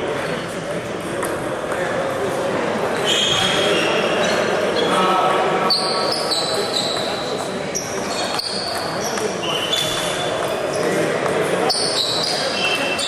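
Table tennis balls clicking off bats and tables in irregular sharp ticks, over a constant murmur of voices and play echoing through a large sports hall.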